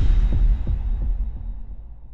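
Deep bass boom from an animated logo intro's sound design, hitting as a rising whoosh cuts off, then pulsing a few times in a low throb and fading away.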